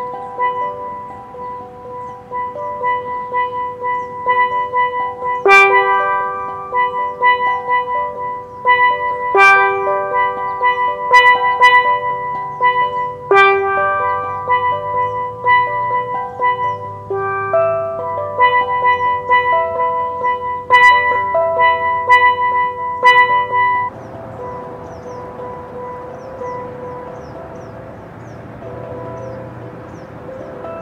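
Steel pan played with sticks: a slow melody of single ringing notes, a few struck hard with a bright attack. About 24 seconds in the playing drops away, leaving a quieter hissy background with a few faint notes.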